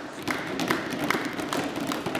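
Members in a debating chamber applauding at the close of a speech: many scattered hand claps, with one set of claps standing out at a steady two to three a second.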